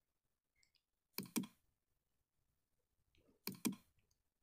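Computer mouse clicking: two quick clicks about a second in, then two more a little over two seconds later, with near silence between.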